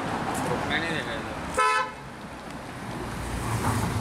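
A car horn gives one short toot about a second and a half in, over street noise and voices. Near the end a low engine rumble swells as the Porsche 911 GT3's flat-six comes up close.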